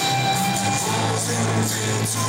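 Football crowd on a terrace singing along to a song played over the stadium sound system, a steady loud mass of music and voices.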